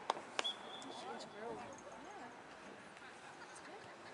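Faint, distant voices of players and spectators around an outdoor soccer field, with two sharp knocks in the first half second and a brief faint high tone just after them.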